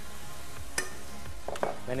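Minced beef and onions sizzling in a frying pan over a gas flame as spice powder is stirred in, with one sharp click of a utensil against the pan about a second in.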